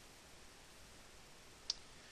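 A single sharp computer mouse click near the end, over faint steady room hiss.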